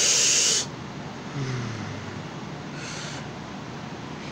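A short, loud puff of breath hissing on the phone's microphone, then a low hum from a man's voice that falls in pitch about a second and a half in.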